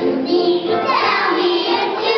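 A group of young children singing together in chorus, holding long sung notes.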